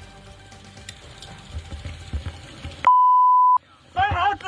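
A broadcast censor bleep: one loud, steady high beep lasting under a second near the end, with all other sound cut out beneath it, masking a word in a shouting match. Before it there is only low background noise.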